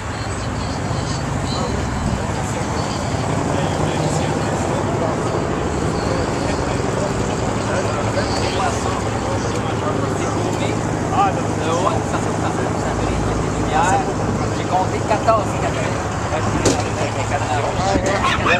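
An engine running steadily with a low, even hum, under scattered chatter from people nearby.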